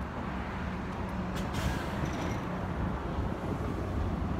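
City street traffic: a steady low rumble of vehicle engines, with a short hiss about one and a half seconds in.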